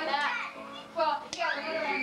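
Several people's voices talking and calling out, including a child's voice, with a single sharp click about a second and a third in.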